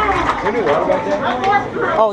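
Several people's voices talking over one another, unintelligible chatter with no music playing.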